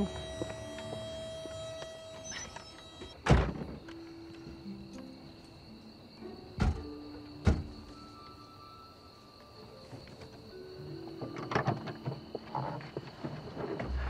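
A car door slammed shut about three seconds in, then two lighter thunks about a second apart near the middle, over soft background music.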